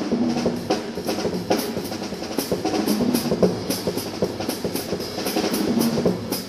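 Jazz piano trio playing live: acoustic piano, double bass and drum kit, with cymbal and drum strokes prominent throughout.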